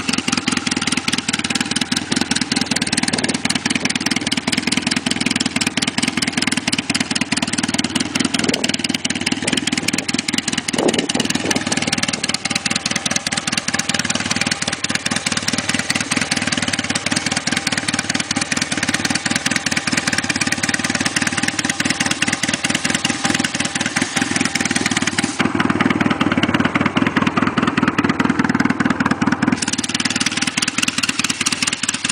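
1980 Kawasaki KZ750 twin's air-cooled parallel-twin engine running steadily after a kick start.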